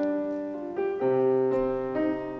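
Grand piano played solo, a classical piece with a new note or chord struck every half second to a second and each left to ring.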